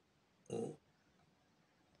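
A voice saying the single letter "O" once, briefly, about half a second in; otherwise near silence.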